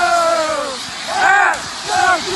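Young men yelling in celebration of a championship win: a long held shout falling in pitch, a quick burst of shouts about a second in, then another long yell starting near the end, over a noisy background.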